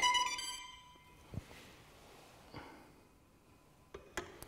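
Gimbal controller's piezo buzzer sounding its calibration tone, which fades out within the first second: the 10-second encoder EL-field calibration has finished. After that it is nearly quiet, with a single soft knock.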